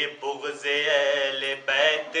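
A man's solo voice reciting an Urdu salam in a melodic chant. He holds and bends long notes in phrases broken by short pauses.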